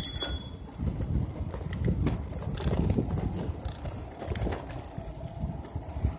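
Bicycle bell rung once at the very start, ringing briefly, followed by the uneven low rumble of the bicycle riding along the street.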